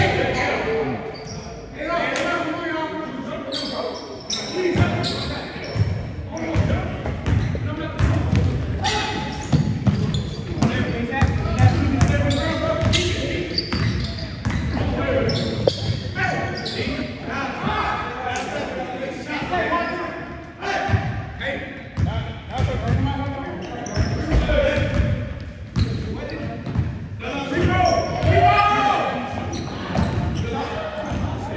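A basketball being dribbled and bounced on a hardwood gym floor during a pickup game, each bounce echoing in the large hall, with players' voices and calls throughout.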